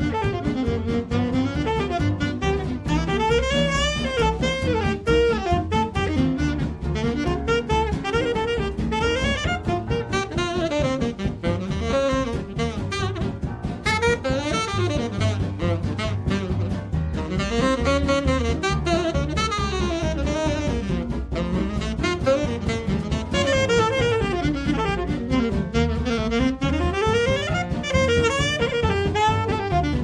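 Saxophone solo in a swing jazz band, a continuous wavering melodic line backed by piano, double bass and drum kit.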